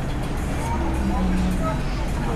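City street traffic: a steady low rumble of vehicles in the roadway, with passers-by talking.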